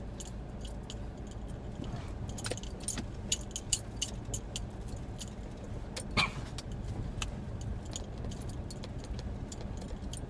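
Steady low rumble of a Ford's engine and road noise heard inside the cab, with frequent light metallic jingling and clicking from loose small items rattling as the vehicle rides over the road. There is one louder knock about six seconds in.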